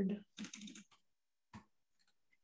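Typing on a computer keyboard: a quick run of keystrokes about half a second in, then a single keystroke about a second later.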